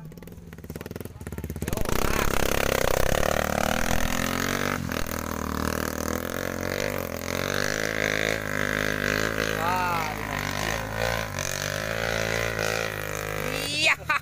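Dirt bike engines running under load on a muddy hill climb. The sound grows loud about two seconds in and holds a steady drone after that.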